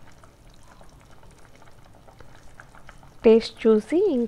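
Bitter gourd pulusu simmering in a pot: faint, steady bubbling with many small pops. A voice starts speaking about three seconds in.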